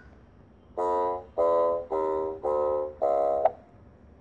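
A short melody of five held notes in a row, each about half a second long, with brief gaps between them.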